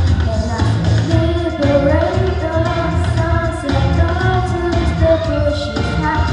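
A boy singing into a microphone over a backing track with a steady, pulsing bass beat, the voice holding and bending long notes.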